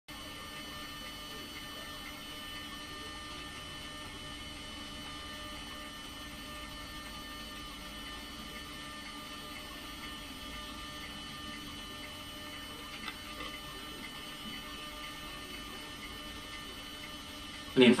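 Steady electrical mains hum with a faint buzz, unchanging throughout.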